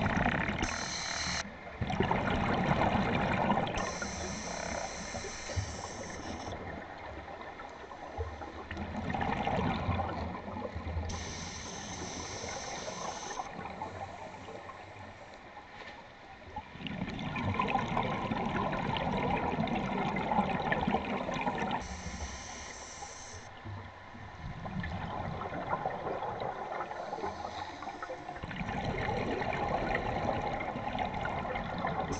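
A diver breathing underwater through a demand regulator: a hiss as each breath is drawn in, then a longer gush of bubbling exhaust. Slow, even breaths come roughly every eight seconds.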